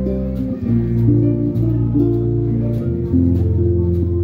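Live band playing an instrumental passage: acoustic guitar over electric bass, with the bass notes changing every second or so and light cymbal ticks from the drum kit.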